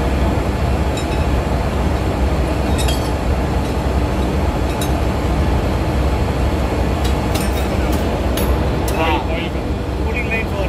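Steady, loud engine-room machinery drone with a deep hum, and the sharp metallic clinks of a steel ring spanner on the rocker-arm nuts of a diesel generator cylinder head. The clinks come now and then at first and in quicker succession from about seven seconds in.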